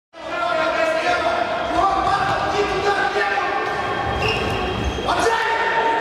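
Futsal game sound in a large, echoing sports hall: a ball thudding on the wooden court, with players' voices calling out.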